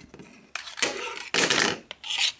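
Handling noise of knives and a Kydex sheath on a workbench: two rustling, scraping stretches followed by a light click near the end.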